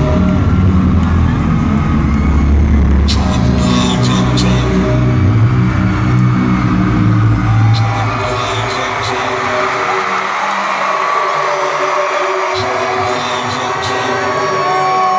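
Live hip-hop concert heard from the arena floor: loud music through the PA with heavy bass and a rapper's voice. About eight seconds in, the deep bass drops out, leaving the vocal and the crowd noise.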